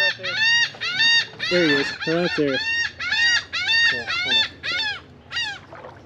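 A bird calling over and over: a quick series of short, high, arched notes, about two a second, growing quieter near the end.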